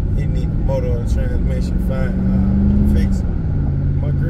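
Chevrolet Tahoe PPV's V8 running under way, heard from inside the cab over road rumble. Its steady note drops in pitch a little after three seconds in.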